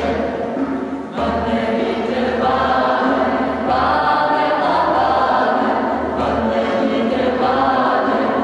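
A small vocal group singing together in long held phrases, with short breaks between phrases, in a church.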